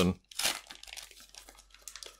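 Wrapper of a Topps Match Attax trading-card pack crinkling in the hands as it is torn open, in a series of irregular rustles.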